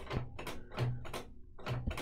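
A valve reel-to-reel tape recorder's function-selector knob and linkage being turned by hand, giving a few separate clicks. The linkage had been sticking and now moves, freed with a little lubrication.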